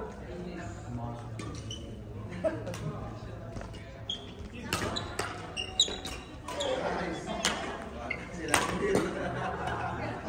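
Badminton rally: rackets striking the shuttlecock with sharp smacks, several in the second half, echoing in a large hall.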